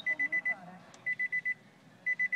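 Warning chime of a 2014 Nissan Altima sounding in the cabin: quick groups of four high beeps, a group about once a second.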